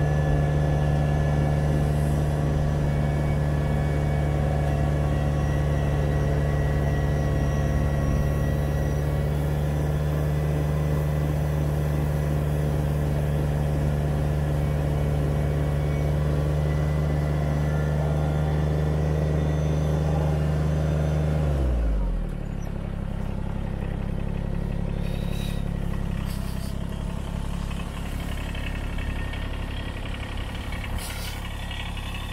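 Kubota BX25D compact tractor's three-cylinder diesel running steadily at high revs, driving a front-mounted snowblower that is throwing snow. About 22 seconds in, the engine note drops sharply and it settles to a lower, idling speed.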